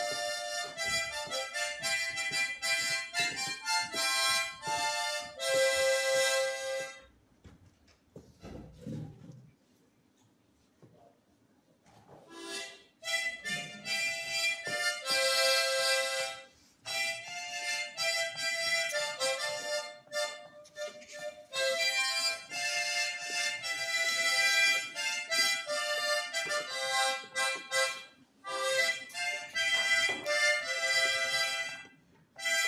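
Harmonica playing a melody with chords, in short held notes. The playing stops for about five seconds after the first seven seconds, then picks up again.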